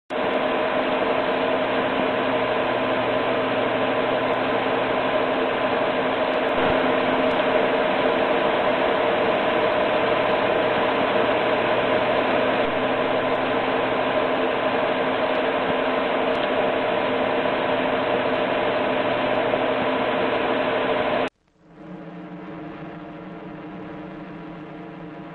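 A loud, steady rushing noise with a hum running through it, which cuts off suddenly about 21 seconds in and gives way to a quieter, steady hum.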